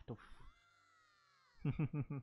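A faint, drawn-out high-pitched cry of "Yeah!" that rises and falls, from a young anime character played quietly in the background. About a second and a half in, a man laughs loudly in quick, even pulses.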